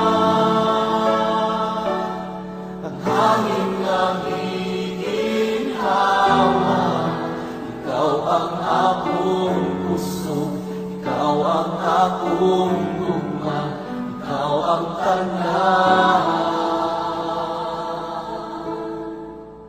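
A Christian worship song sung in Cebuano over a steady instrumental backing, in sung phrases with short breaths between them.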